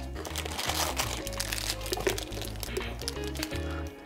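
Clear plastic bag holding loose pieces of colored recycled glass crinkling as it is handled, over background music with a steady bass line.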